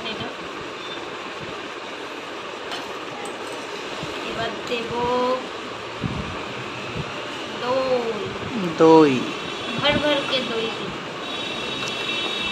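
Soft, untranscribed voices in short bits over a steady background hum, with a few light clicks of a steel spoon against a steel bowl.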